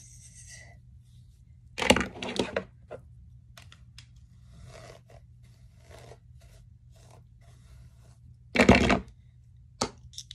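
Handling noise of hair being combed and smoothed: faint scratchy strokes of a comb through a section of hair, with two louder rustling, scraping bursts, one about two seconds in and one near the end.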